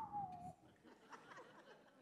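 The tail of a man's falling, whistle-like "whew" into a handheld microphone, dying away about half a second in, a sound effect for someone sliding down a roof. Faint chuckles from the audience follow.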